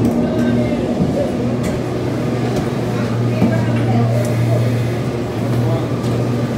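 Steady low hum of a Garaventa gondola station's drive machinery, with a few faint clicks, under the indistinct voices of people around.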